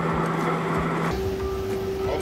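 Chili-pepper mill machinery running steadily: a motorized seed separator humming, then, after a cut about a second in, the chili-powder grinder running with a different steady tone.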